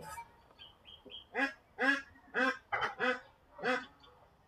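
A bird calling in the background: six short pitched calls, evenly spaced about half a second apart, starting about a second and a half in.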